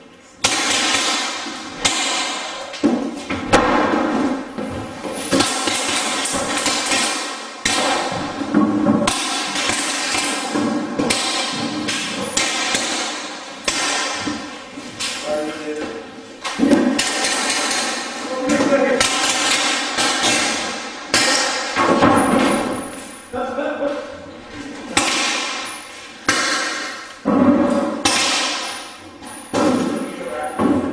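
Loud music with a singing voice, starting suddenly and running on continuously.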